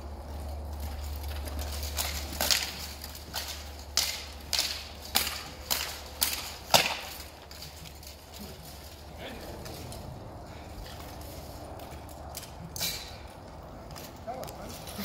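Armoured longsword sparring: swords striking each other and plate armour in a quick series of about nine sharp clashes between about two and seven seconds in, then one more near the end.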